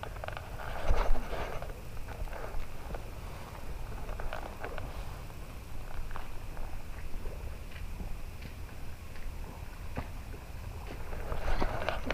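A spinning reel being cranked to retrieve a lure: a low, even whirring with scattered light clicks, and a louder burst about a second in.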